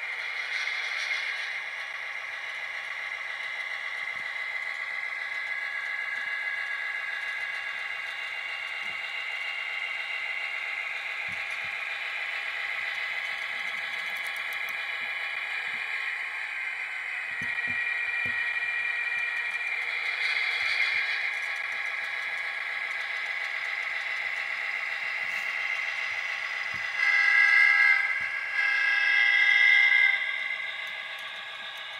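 Sound decoder in an HO-scale Athearn GP35 model locomotive playing its diesel engine sound as the model runs, thin and tinny through the tiny onboard speaker with no bass. Two louder blasts come near the end.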